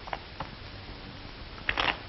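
Playing cards being dealt onto a table: a couple of light clicks, then a short brushing slap of a card near the end, over the steady hiss of an old film soundtrack.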